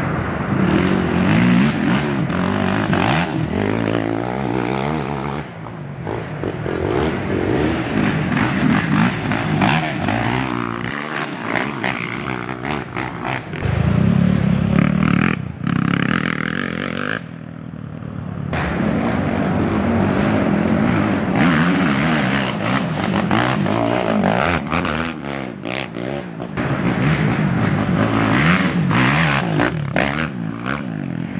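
Race ATV engines revving hard and dropping back, over and over, as quads accelerate through the ruts. The sound is briefly quieter a little past halfway.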